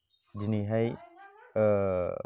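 A man's voice speaking into a clip-on microphone in short phrases, the second drawn out on a long, level vowel.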